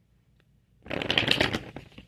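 A deck of tarot cards being shuffled: a dense rush of rapid card flicks that starts just under a second in and lasts about a second.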